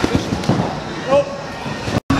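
Several sharp thumps and pops of bodies landing on trampoline beds, with the loudest about a second in, over a background of people's voices.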